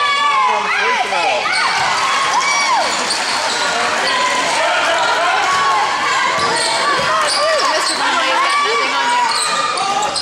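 A basketball being dribbled on a gym floor while many spectators and players talk and call out at once.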